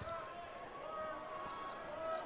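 Low murmur of an arena crowd at a basketball game, with a basketball being dribbled on the court.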